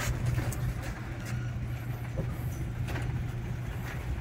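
Chamberlain LiftMaster garage door opener running as it raises the door: a steady low motor hum with a few light clicks and rattles from the door.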